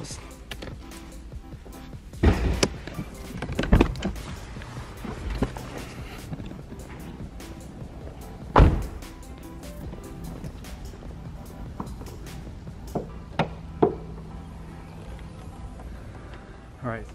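Background music, with several clunks and thunks as an Infiniti Q60's hood is released and opened. The loudest is a single sharp thump just past halfway.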